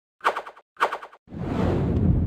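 Animated logo intro sound effect: two short bursts of rapid rattling clicks, then a loud rushing noise that builds up about halfway through and holds.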